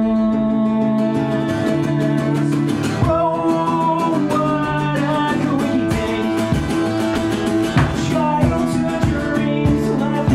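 Live solo song: an amplified acoustic guitar strummed in a steady rhythm, with a singer holding long notes into the microphone.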